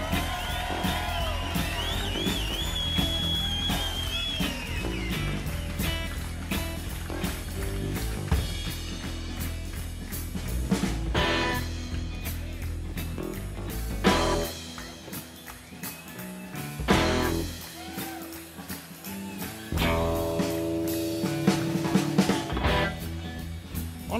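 Live blues-rock band playing an instrumental vamp with guitar and drums, a bending melodic line in the first few seconds. The music thins out past the middle, with a few sharp accents.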